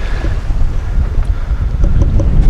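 Wind buffeting the microphone aboard a sailing yacht in about 11 knots of breeze: a loud, uneven low rumble.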